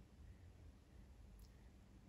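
Near silence: room tone with a faint low hum, and one faint click about one and a half seconds in.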